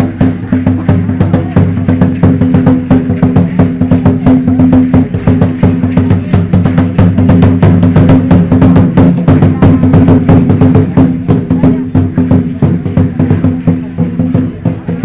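Danza azteca drumming: a large upright drum beaten in a fast, steady rhythm, with clicking and rattling percussion over it.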